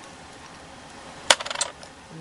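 Small hard cosmetic containers clinking as loose eyeshadow is tapped into a little mixing dish: one sharp click a little past halfway, then a quick run of lighter clicks.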